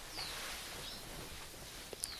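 Steady faint background noise with two short, high, falling chirps of a bird, one just after the start and one about a second in.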